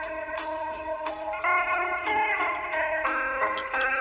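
A 1983 Philips D6620 mono cassette recorder playing back a music tape, a melody changing notes every fraction of a second with little above the upper mid-range. The playback is crying (wavering in pitch), which the owner puts down to worn drive belts and perhaps an old motor.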